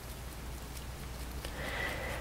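Faint patter of liquid being shaken inside a small capped plastic reagent bottle (Hexagon OBTI buffer bottle), mixing the blood sample from the collection stick into the reagent.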